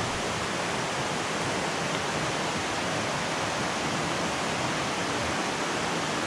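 River water rushing steadily over rocks, an even continuous noise.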